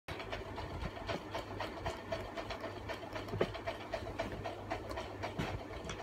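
Faint scattered clicks and rustles of someone moving about and getting into place, several small knocks a second, over a low steady hum.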